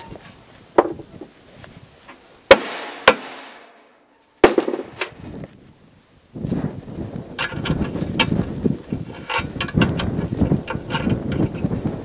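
About five sharp knocks in the first five seconds as a tapered hardware coupler is pounded down into its pocket on a plastic floating dock section; the loudest, near the middle, rings briefly. After that comes a steady run of rattling, scraping and small clicks as the parts are handled.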